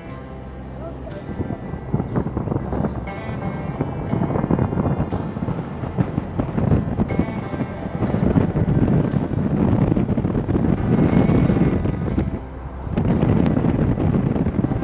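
Wind buffeting the microphone at an open car window while driving, a loud uneven rumble, with music underneath.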